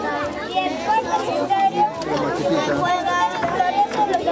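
A crowd of schoolchildren's voices, many talking at once in continuous high-pitched chatter.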